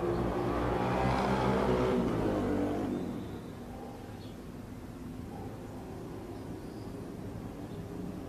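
A motor vehicle's engine running, dying away about three seconds in and leaving faint outdoor background noise.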